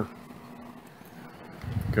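Small 12-volt fan on an RV refrigerator vent, switched on by its thermostat and running with a steady faint hum. A low rumble rises near the end.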